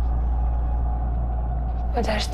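Low, steady rumbling drone with a faint held tone above it: a suspense underscore.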